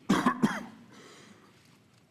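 A man coughing to clear his throat: two quick coughs about a third of a second apart, right at the start.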